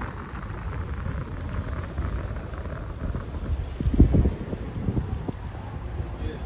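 Wind buffeting a handheld microphone over a low street rumble, with scattered faint handling clicks and one louder low thump about four seconds in.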